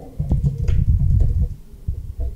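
A quick run of keystrokes on a computer keyboard lasting about a second, heard as dull low thumps.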